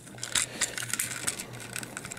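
Hard plastic parts of a transforming robot toy clicking and ticking as fingers work at tightly pegged side panels, a series of small irregular clicks.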